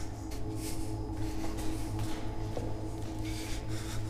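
Faint scuffing footsteps and rubbing as someone walks along a concrete corridor, over a low steady hum and a sustained tone.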